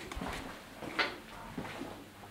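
A door latch clicking once about a second in, with faint footsteps on a tiled floor around it in a quiet room.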